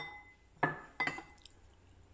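Ceramic bowls clinking as a bowl of raw rice is picked up and handled: three sharp clinks about half a second apart, each with a brief ring.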